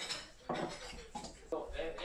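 Bowls and plates being set down on a wooden table, giving a few separate knocks and clinks about half a second apart.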